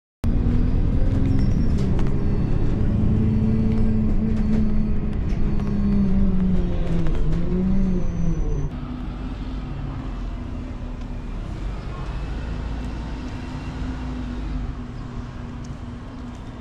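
City bus engine and drivetrain heard from inside the bus, its pitch rising and falling as the bus speeds up and slows. About halfway through it drops suddenly to a quieter, steady hum.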